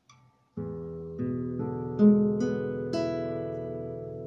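Acoustic guitar playing an E7 chord one string at a time, six notes from the low sixth string up to the high first string, each left ringing so the chord builds and sustains. The open fourth string gives the chord its seventh.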